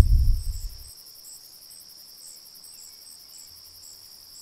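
Insects chirping in a meadow: a steady high trill with short chirps repeating about two or three times a second. A low wind rumble on the microphone in the first second is the loudest thing.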